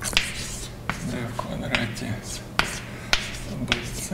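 Chalk writing on a blackboard: a quick run of sharp taps as the chalk strikes the board, with scratchy strokes between them.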